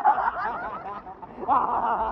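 Laughter: one burst at the very start and another from about a second and a half in, with a quieter gap between.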